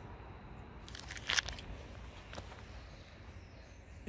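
A small plastic bag of screws crinkling briefly in the hand, loudest about a second in, over a low steady background.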